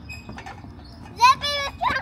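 A young child's high-pitched wordless squeal about a second in, followed by a short rising vocal sound near the end.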